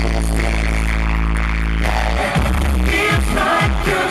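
Loud live pop concert music over a PA: a held low synth bass note for the first couple of seconds, then the drum beat kicks back in, with singing entering near the end.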